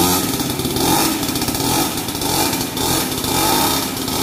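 Pull-started 50cc two-stroke brush-cutter-type engine of a mini trail bike running, its sound swelling and easing several times.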